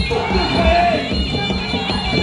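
Traditional Kun Khmer ringside fight music: a reedy, oboe-like sralai playing a bending melody over steady drumming, with crowd noise underneath.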